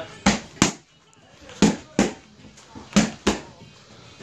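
Boxing gloves striking focus mitts: three quick two-punch combinations, each a pair of sharp smacks about a third of a second apart, landing roughly every second and a third.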